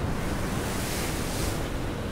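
Turbulent floodwater rushing and churning: a steady, dense rush of water noise.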